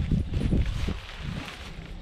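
Handling noise: a sea anchor's rope and fabric drift chute rustling and knocking as they are gathered up by hand, loudest in the first half second.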